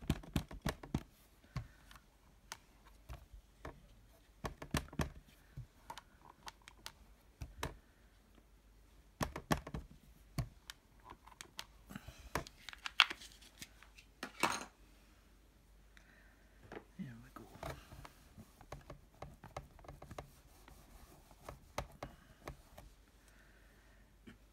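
Scattered light clicks and taps of stamping tools (clear stamps, an acrylic block and an ink pad) handled on a card-making platform while stamping. There is a louder cluster of knocks and a short scrape about twelve to fifteen seconds in.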